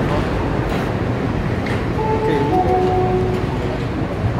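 Passenger coaches of an arriving train rolling past, their wheels on the rails making a steady rumble with no break.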